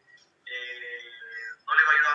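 A person's voice drawn out in one long held, sung-sounding note of about a second, then speaking again near the end.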